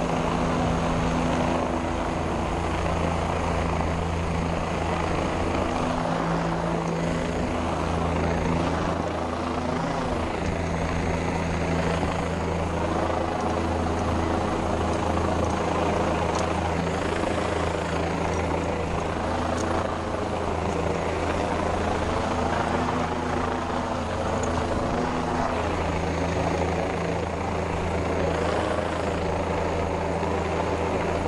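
Rescue helicopter hovering overhead, its rotor and engine running steadily with a deep rhythmic throb, heard from close beneath on the long line.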